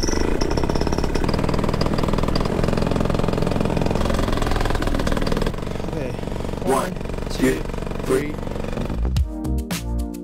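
Minari 180 two-stroke paramotor engine running steadily with a fast, even firing pulse, a little quieter after about five seconds. Electronic music comes in near the end.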